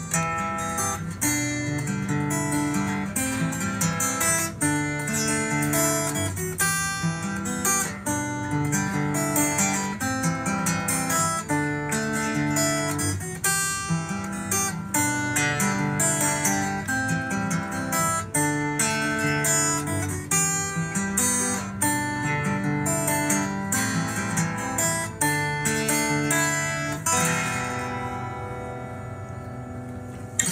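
Acoustic guitar picked and strummed in the instrumental opening of a singer-songwriter song, with no singing yet. Near the end the guitar lets a chord ring and fade.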